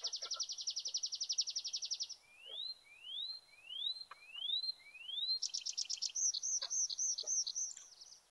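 Tree pipit song delivered in flight: a fast, even trill ending about two seconds in, then five rising slurred notes, then a run of quick arched notes to close the song near the end.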